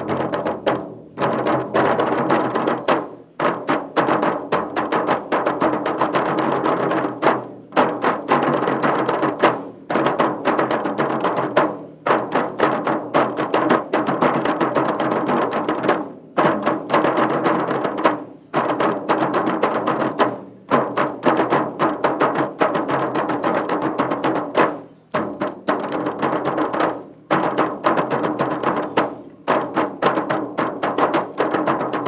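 Large Sri Lankan rabana (banku rabana), a big frame drum on a stand, beaten by hand by several players together. It plays fast, continuous rhythmic patterns in phrases, with a brief pause every few seconds.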